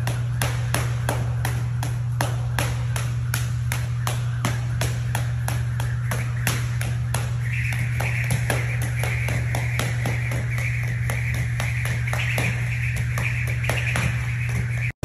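Jump rope slapping the gym mat in a fast, even rhythm of about three to four strokes a second, over a steady low hum.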